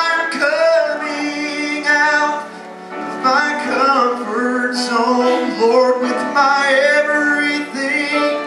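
Men and women singing a gospel song in sustained, wavering sung lines, with a short dip between phrases about two and a half seconds in.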